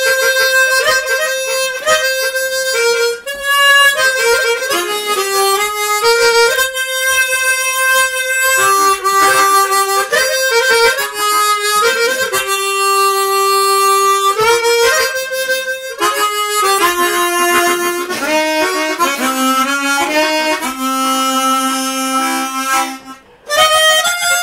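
Chromatic harmonica playing a slow, sustained melody, one note at a time, with a brief break near the end.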